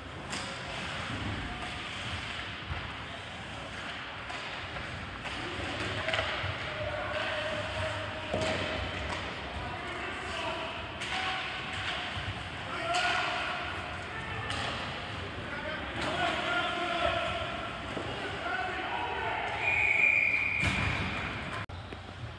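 Ice hockey game in an arena: repeated sharp knocks and thuds of sticks, puck and bodies against the boards, with players shouting across the ice. Near the end comes a short high whistle blast.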